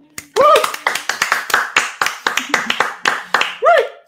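Two people clapping quickly, about five claps a second, with a rising-and-falling cheering call about half a second in and another near the end.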